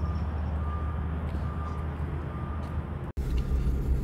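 Vehicle engine idling with a steady low rumble, with a faint high beep repeating every half second or so. The sound cuts out for an instant about three seconds in, then the rumble carries on.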